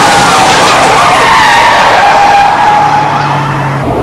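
Police squad car siren wailing over loud, continuous road and engine noise during a high-speed pursuit.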